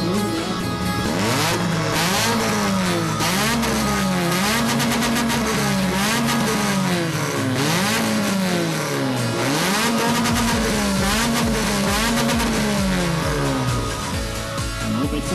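Car engine revved again and again, its pitch climbing and dropping about every second and a half, over background music.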